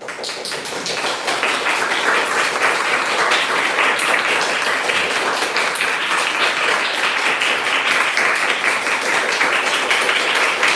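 Small audience applauding: the clapping starts suddenly and fills in within about a second, then keeps up steadily, with single claps standing out.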